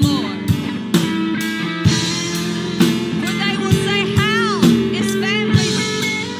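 A woman singing into a microphone with a band accompaniment of keyboard and drums, the drum landing on a steady beat about once a second, with a long held, wavering note about four seconds in.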